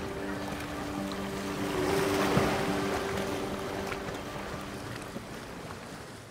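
Seaside outdoor ambience: a steady low hum that stops about four to five seconds in, under a wash of noise that swells about two seconds in and then fades out.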